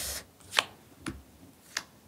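Tarot cards being handled and laid down on a cloth-covered table: a short sliding swish at the start, then three crisp card snaps, the loudest about half a second in and near the end.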